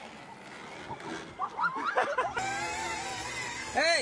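Girls' voices yelling and squealing during a ride on a small ride-on vehicle, with one long held cry in the second half and a short rising-then-falling shout near the end.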